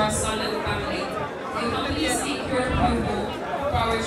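A woman talking into a microphone, amplified through the hall's sound system, with crowd chatter behind her.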